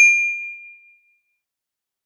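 Ringing tail of a bell-like ding sound effect, one clear tone with a few higher overtones, dying away within about a second.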